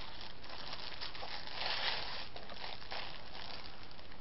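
Clear plastic packaging crinkling as it is handled, loudest about two seconds in.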